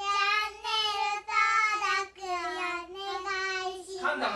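Young girls singing in high child voices, a short phrase of about five long held notes at nearly one pitch.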